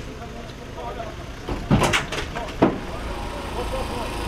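Heavy wooden furniture being handled and dropped: a cluster of loud knocks and clatter a little under two seconds in, then one sharp knock just after, over a background of people talking.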